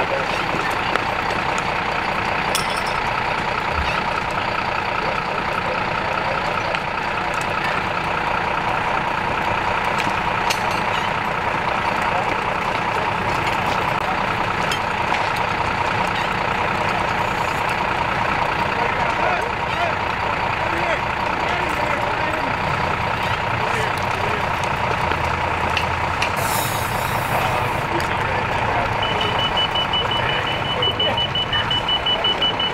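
Fire apparatus diesel engine running steadily, with a short hiss of air about 26 seconds in. A rapid, high-pitched beeping starts near the end, like a vehicle's backup alarm.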